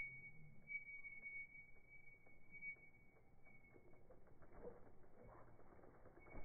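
Near silence: a faint muffled background with a thin steady high tone and a few very faint ticks.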